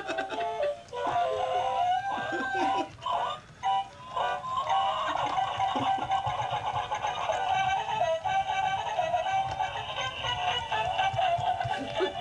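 Battery-powered singing plush toy chicken playing an electronic tune with synthetic singing over a steady beat.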